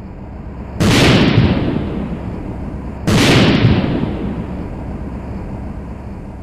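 Explosion sound effect of a volcanic eruption: two sudden loud blasts about two seconds apart, the first about a second in. Each dies away into a low rumble over a couple of seconds.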